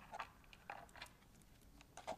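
Near silence with a few faint, short clicks from the metal rings of a ring-and-leather-cord bracelet being handled.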